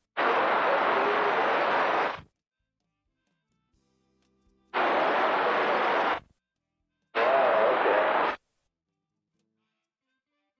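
CB radio receiver on channel 19 opening its squelch on three weak transmissions: bursts of static with a faint, garbled voice buried under them, each cutting off abruptly into dead silence. The first lasts about two seconds; the other two come at about five and seven seconds and are shorter.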